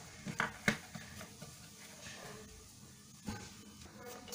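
Faint handling sounds of a plastic ruler and a cardboard chips tube being positioned and marked with a pen: a few light taps and knocks.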